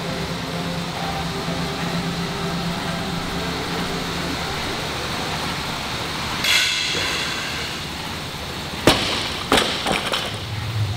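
A loaded barbell with bumper plates (135 lb) dropped to the gym floor after a squat snatch. It lands with one loud bang near the end and bounces twice more. Under it an Assault AirBike's fan whooshes steadily, and a short grunt from the lifter comes as he pulls the bar.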